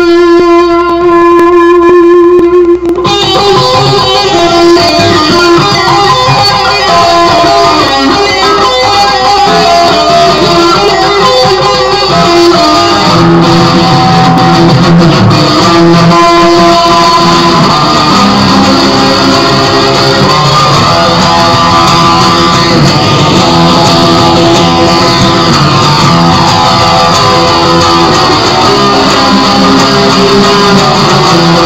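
Electric guitar playing: one long held note for about the first three seconds, then a continuous run of lead phrases and chords.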